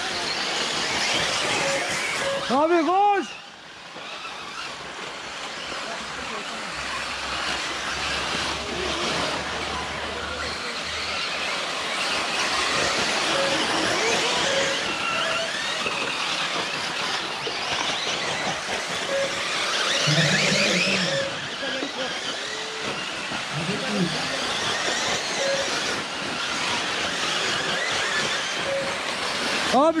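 Electric 1/8-scale RC buggies racing on a dirt track: their motors whine, rising and falling in pitch as they speed up and slow down, over a steady hiss. A loud whine rises and falls about three seconds in, then the sound drops away suddenly.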